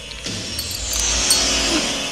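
Horror-film soundtrack: score music with a hissing sound effect that swells about half a second in and holds, a few sharp clicks near the start.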